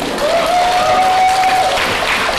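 Studio audience applauding, a dense steady clapping. A single steady tone is held over the clapping for about a second in the middle.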